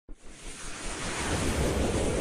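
Whoosh sound effect from an animated intro: a rushing noise that starts suddenly and swells steadily louder.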